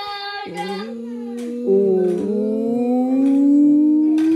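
A woman and a young child vocalising together in long, held, wordless sung notes, one note slowly rising in pitch over the last two seconds.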